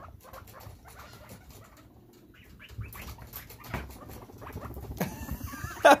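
Guinea pigs scampering through the cage: a running patter of small clicks and scuffs from their feet, with a few short squeaks.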